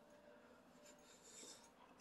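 Near silence: room tone, with a faint brief rub about a second and a half in.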